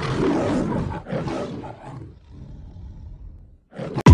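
A loud roar sound effect, strongest in the first second and dying away in uneven pieces over the next few seconds, with a short rising swoosh at the very end.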